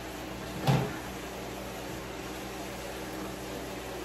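A single dull knock in a kitchen about a second in, over a steady low hum.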